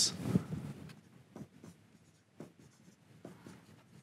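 Dry-erase marker writing on a whiteboard: faint, short strokes at irregular intervals as words are written out.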